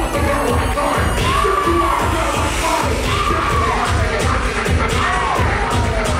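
Loud dance music with a steady, pounding bass beat, with a crowd cheering and shouting over it.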